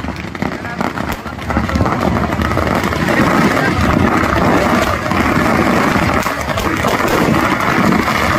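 Firecrackers in a burning Ravana effigy going off in a dense, rapid crackle, with a crowd's voices; the din grows louder about a second and a half in.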